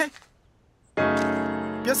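A single piano chord struck about a second in, ringing on and slowly fading, after a moment of near silence.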